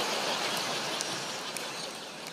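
Audience laughing and clapping in reaction to a punchline. It swells just before and eases off slightly near the end.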